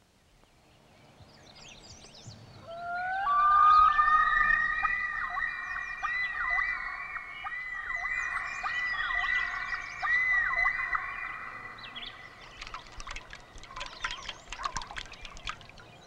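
Common loons calling: several long wailing notes, overlapping, rise in pitch about three seconds in and hold with a wavering pitch for about nine seconds. A run of short sharp clicks follows near the end.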